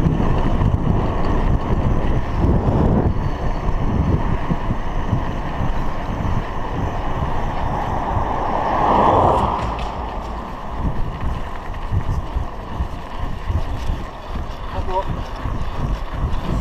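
Wind rushing and buffeting on a GoPro's microphone while riding a bicycle along an asphalt road, with steady tyre and road rumble. A car swells past about nine seconds in.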